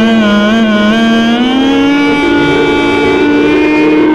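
Clarinet playing a Hindustani classical phrase: a held note shaken in pitch about three times a second, then a slow upward slide (meend) to a higher note that is held steadily. A steady drone sounds underneath.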